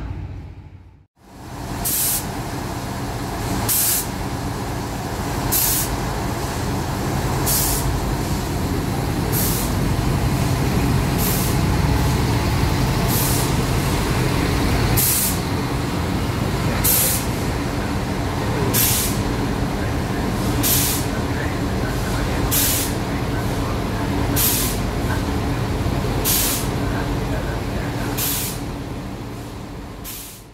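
ALn 663 diesel railcar standing with its engine idling steadily, while a short hiss of compressed air repeats about every two seconds.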